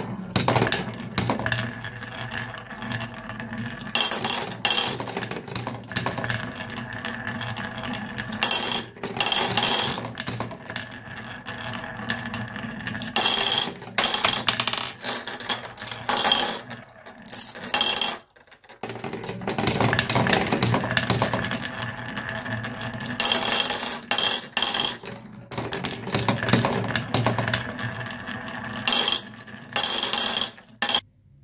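Glass marbles rolling through a wooden block marble run: a steady hollow rolling rumble with sharp clacks each time a marble drops onto a block or track. There is a short lull about two thirds of the way through.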